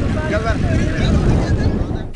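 Wind rumbling on an outdoor microphone, with faint voices of people talking in the background.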